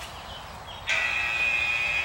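Interval timer beeping: one steady, high electronic tone that starts suddenly about a second in and lasts just over a second, marking the end of a work interval.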